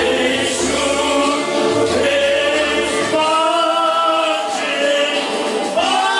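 Two men singing karaoke together into microphones over a backing track, holding a long note through the middle.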